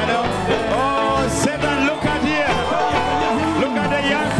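Congregation singing a lively gospel song together with instrumental backing, a steady bass line underneath the voices.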